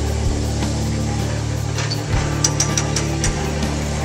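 Background music with sustained low notes.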